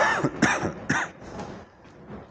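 A man coughing: a short run of three or four coughs about half a second apart, the first the loudest.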